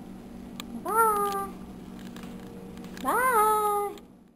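Two short, high whining cries from a young Pomeranian puppy, about a second in and again near the end, each rising sharply in pitch and then sliding slowly down.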